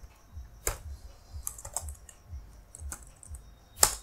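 Computer keyboard typing: scattered, irregular key clicks, with one louder keystroke near the end.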